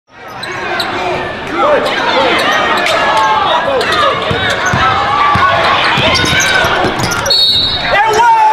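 Basketball being dribbled on a hardwood gym floor during a game, with crowd voices throughout. A brief high tone sounds near the end.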